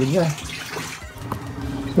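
Engine coolant draining out of a Mazda Bongo Friendee's radiator, a steady stream of liquid splashing down.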